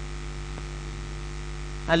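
Steady electrical mains hum in the microphone and sound system, with a faint click about half a second in.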